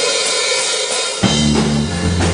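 Live rock band launching into a song: a wash of drum-kit cymbals begins abruptly, and about a second in, bass and electric guitars come in with steady low notes under it.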